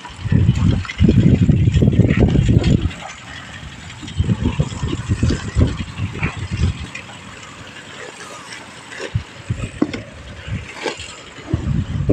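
Wind gusts buffeting the microphone: heavy low rumbling for the first few seconds and again around the middle, then scattered small knocks and crackles.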